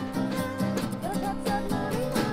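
A live acoustic gypsy-indie band plays a short instrumental stretch between vocal lines: two acoustic guitars strumming, with violin and snare drum.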